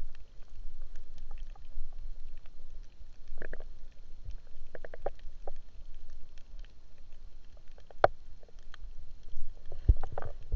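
Underwater sound during spearfishing: a steady low rumble of water against the camera, with many faint scattered clicks and a few short gurgles. A sharp click comes about 8 seconds in and a heavier thump near the end.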